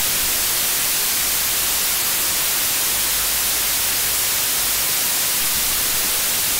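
Loud, steady white-noise static hiss that cuts in abruptly and drowns out everything else, strongest in the high treble.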